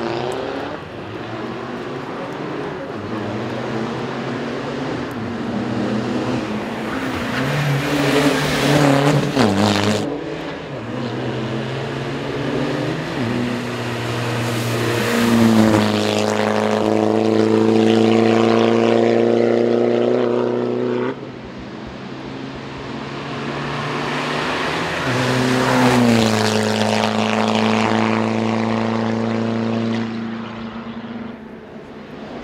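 BMW 120d hill-climb race car's four-cylinder turbodiesel engine under hard acceleration. Its pitch climbs through each gear and drops at every upshift as the car runs past. The sound breaks off suddenly twice and picks up again on another stretch of the climb.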